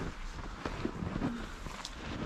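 Wind rumbling on the microphone, with a few faint crunches of footsteps in snow.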